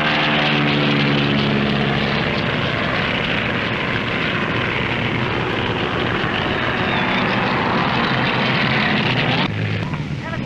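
Propeller airplane engine running, a steady drone with a clear pitched hum in the first couple of seconds, under the heavy hiss of an early sound-film recording. The sound changes abruptly near the end.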